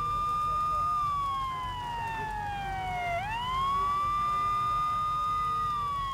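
Emergency vehicle siren in a slow wail: a high held tone slides down over about two seconds, sweeps quickly back up, holds, and begins to fall again near the end, over a low steady rumble.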